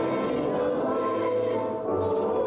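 Mixed church choir of men's and women's voices singing in a cantata, holding notes with a brief break just before the end.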